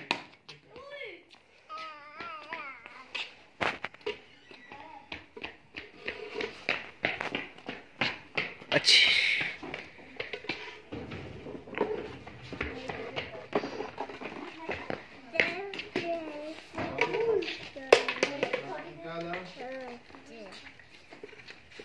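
Children's voices calling and talking, with a few sharp knocks, the loudest near the end.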